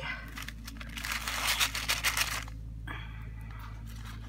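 Small plastic zip-lock bags of beads crinkling and rustling as they are tipped out of a black mesh drawstring bag, densest for about a second and a half from about a second in, followed by a brief tap about three seconds in.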